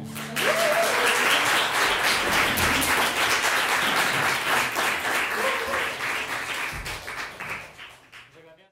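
Audience applauding with a dense patter of clapping and a couple of short calls from the listeners; the applause thins out and dies away near the end.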